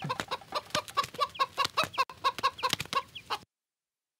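A hen clucking in a rapid, even run of short calls, about five a second, which cuts off suddenly about three and a half seconds in.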